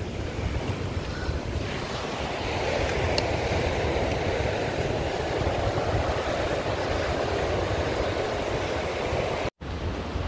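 Ocean surf breaking on a stony shore: a steady wash that swells in the middle, with wind on the microphone. The sound cuts out for a moment near the end.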